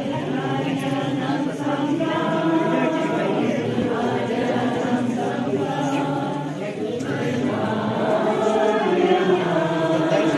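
A choir of many voices singing together, sustained and steady.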